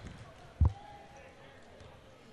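A single basketball bounce on a hardwood court, one sharp thud about half a second in, over low background noise from the gym.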